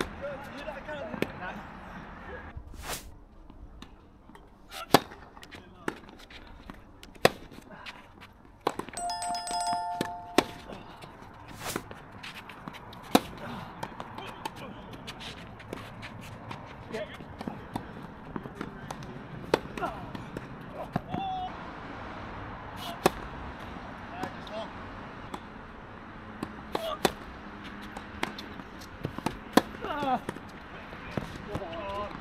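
Tennis balls struck by rackets in doubles play: sharp pops one to a few seconds apart, with voices in the background between them. A short held tone sounds about nine seconds in.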